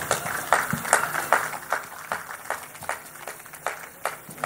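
A run of irregular sharp claps or knocks, several a second, with no speech over them.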